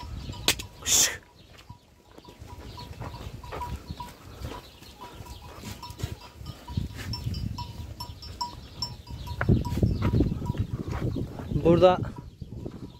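A flock of sheep moving through a dirt-floored pen, with a low shuffling rumble of hooves and bodies. A small bell clinks about three times a second as they walk.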